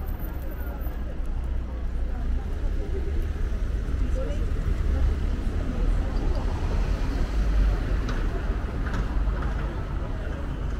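City street ambience: passers-by talking and car traffic, with a steady low rumble that swells about halfway through.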